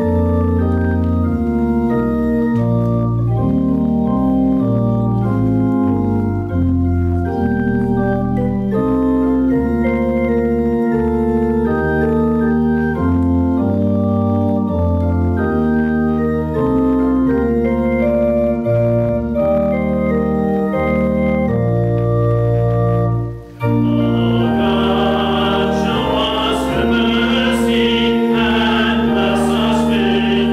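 Church organ playing a hymn introduction in sustained chords over a moving bass line. It breaks off briefly about 23 seconds in, then the congregation joins in singing the hymn with the organ.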